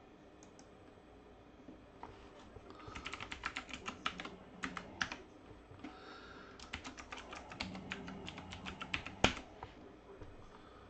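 Typing on a computer keyboard in quick runs of keystrokes, entering a username and password into a login prompt. The typing starts about three seconds in, and one louder click comes near the end.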